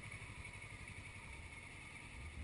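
Motorcycle engine running at low revs as the bike rolls slowly, heard as a faint, steady low rumble.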